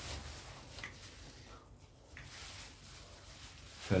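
Faint rustling of a thin plastic bag being handled and opened, with a few soft ticks, a little louder in the second half.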